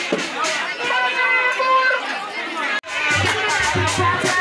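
A woman's voice through a handheld megaphone, over crowd chatter and music. About three seconds in it cuts off suddenly to loud drum-driven dance music with a steady beat, typical of sabar drumming.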